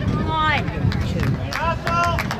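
Shouting voices on an outdoor soccer field: two short high-pitched calls, one about half a second in and one near the end, over a steady low background rumble.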